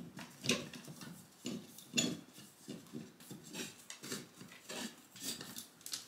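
Curtain rod and curtain hardware clinking and scraping in irregular short knocks as a curtain is worked along the rod by hand.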